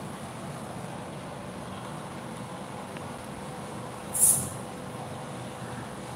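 Steady low background noise, with one short, sharp hiss high in pitch about four seconds in.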